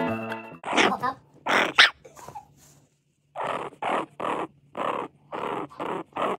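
A bulldog puppy making short, breathy grunting noises: a few louder ones, a brief pause, then an even run of about three a second.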